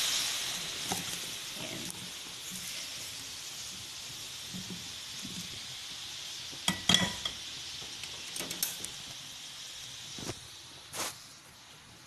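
Soy sauce and sugar cooking liquid sizzling and bubbling in a hot pan as boiled baby potatoes are poured in from a pot. The sizzle is loudest at the start and slowly dies down, with a few sharp knocks past the middle.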